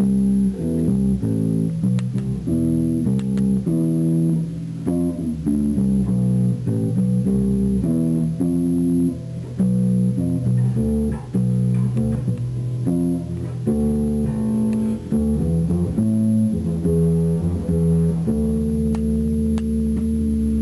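Electric bass guitar played fingerstyle, improvising a run of notes on a five-note pentatonic scale that leaves out the fifth of the major scale, over the chord sequence C, F, B diminished, A minor, D minor. It ends on one long held note.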